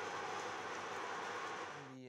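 Electric mincer-type grinder running steadily as it grinds food waste and extrudes it through its cutting plate, easing off a little near the end.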